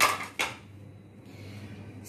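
A steel spoon and plastic plates clattering as they are set down on the counter: two sharp clicks, the second about half a second after the first.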